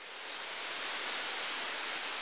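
A steady rushing hiss, like running water or wind, that swells in at the start and then holds level, strongest in the upper range.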